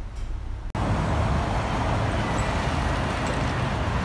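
Road traffic passing close by: a steady rumble of engines and tyres. It breaks off sharply about a second in and comes back louder.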